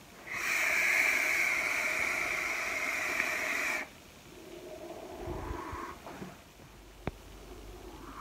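A long draw on a vape, a steady hiss of air through the heated coil lasting about three and a half seconds, then a softer breathy exhale of the vapour cloud. A single small click comes near the end.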